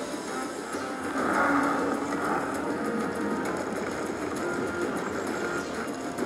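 Video slot machine's bonus-round music and reel-spin sounds over a steady casino hubbub, swelling in loudness a second or so in, as one free spin plays out.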